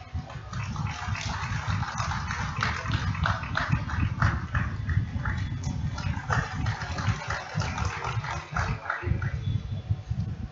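Scattered hand-clapping from an audience: irregular single claps, several a second, over a low rumble.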